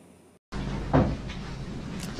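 A brief total dropout, then steady courtroom room noise with a single loud thud about a second in, as a door swings shut.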